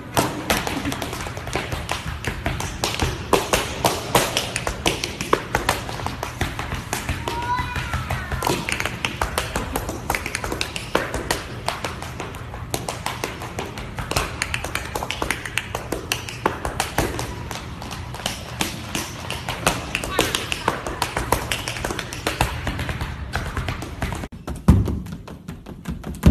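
Tap shoes striking a wooden stage floor: a dense, uneven stream of quick taps and heel drops from dancers working through tap rhythms.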